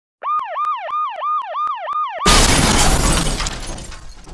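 Siren sound effect in a fast yelp, about four quick rises and falls in pitch a second, with a light regular clicking. About two seconds in it is cut off by a sudden loud crash that fades over the next second and a half.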